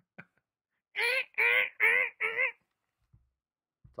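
A person's high-pitched, honking laugh: four loud, evenly spaced bursts about a second in, with a wavering pitch.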